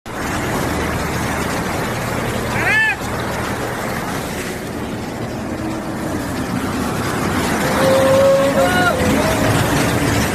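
Vehicles wading through a flooded street: engines running under a steady churn and splash of floodwater pushed aside by their wheels and bodies. There is a brief shout just before three seconds in, and more raised voices near the end.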